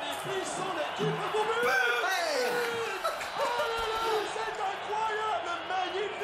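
Indistinct voices, several overlapping, with no clear words.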